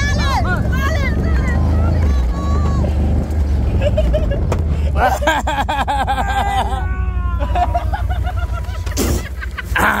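Onlookers shouting and cheering over the low, steady hum of a quad bike engine. The engine is loudest in the first few seconds and then eases.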